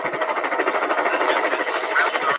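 Steady engine-like mechanical noise with a fast flutter, played from a YouTube video's soundtrack.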